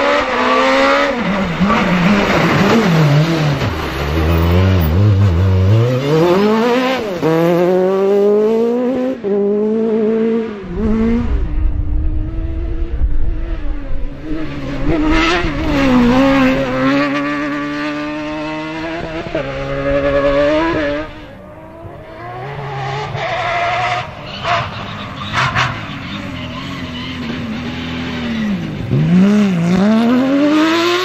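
Rally cars driven flat out one after another, their engines revving hard up through the gears and dropping back at each shift or lift as they pass. There is a brief lull a little after two thirds of the way through.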